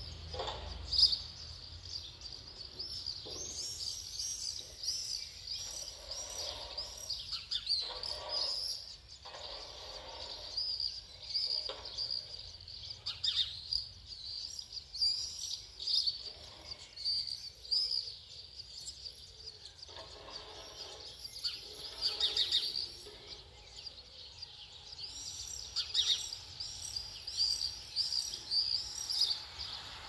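House martins and common swifts calling around the nests and nest boxes under the eaves. Many short, high chirps come in quick runs, with denser bursts about two to four seconds in, around twenty-two seconds and near the end.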